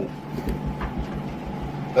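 A low, steady background rumble with faint hiss, like room or distant traffic noise, in a pause between a man's spoken sentences.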